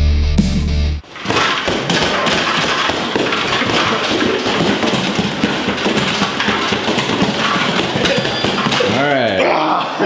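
Rock intro music with electric guitar cuts off about a second in. It is followed by a run of quick thuds: fists striking the padded targets of a Nexersys boxing trainer over a noisy background, with a voice rising and falling near the end.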